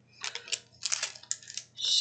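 Small carded, plastic-packaged trinkets being handled and set down, giving a quick string of light crinkles and clicks.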